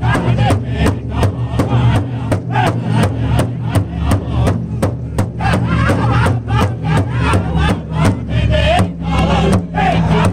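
A powwow big drum struck in unison by several men with padded drumsticks at a steady fast beat, about four strokes a second. Over it the men sing loudly together in a powwow song.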